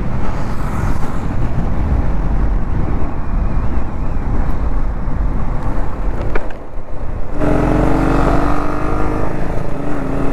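Motorcycle riding at highway speed, its engine running under heavy wind noise on the handlebar-mounted camera's mic. About seven seconds in the sound changes abruptly to a clearer, steady engine note.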